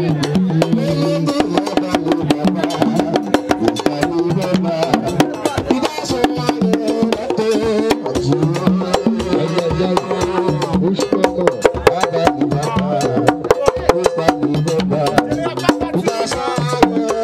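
Haitian Vodou ceremonial music: drums and sharp, clicking percussion in a rapid, dense rhythm under a voice singing through a microphone.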